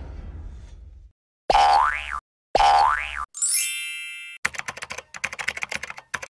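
Cartoon sound effects of an animated end screen: a whoosh dies away, then two identical boings about a second apart, each sliding up and back down in pitch, a bright shimmering chime that falls, and a rapid run of clicks near the end.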